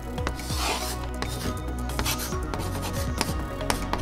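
Chalk scratching on a blackboard in a string of short strokes, over steady background music.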